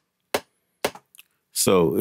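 Two sharp metronome clicks from the DAW's click track, half a second apart, at 120 BPM, with the chord they were backing already gone. A fainter tick follows about a second in, and a man starts talking near the end.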